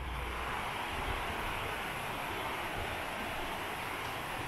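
Steady, even rushing of flowing river water.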